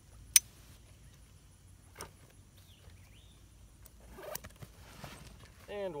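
A single shot from a suppressed .22 pistol about a third of a second in, a short sharp report. A few faint knocks follow, and a man's voice comes in near the end.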